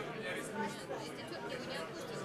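Indistinct chatter of many people talking at once, a steady hubbub of overlapping conversations.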